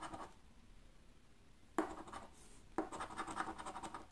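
A coin scratching the coating off a paper scratch card in rapid back-and-forth strokes: a short burst at the start, a sudden scrape about two seconds in, and a longer run of scratching through the last second.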